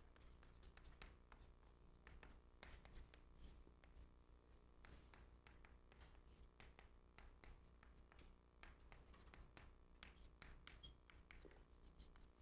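Chalk writing on a blackboard: faint, quick irregular taps and scratches as Chinese characters are written stroke by stroke, over a low steady hum.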